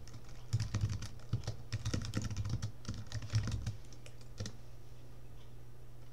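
Computer keyboard being typed on: a quick run of keystrokes for about three seconds as a console command is entered, one last keystroke shortly after, then the typing stops.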